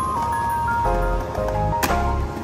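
Background music: a melody of held, gliding notes over a low bass pulse, with one sharp click near the end.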